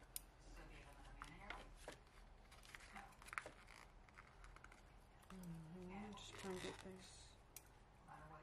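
Quiet snipping of small scissors and rustling of sticker sheets, a scatter of faint clicks and snips through the first half. Near the middle, a faint low murmured voice for about two seconds.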